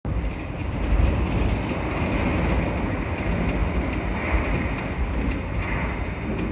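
Shonan Monorail suspended rubber-tyred car running along its track, heard from inside the front cab: a steady low rumble with a hiss over it.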